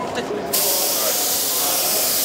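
Airbrush spraying paint: a steady hiss of compressed air that starts abruptly about half a second in as the trigger is pressed.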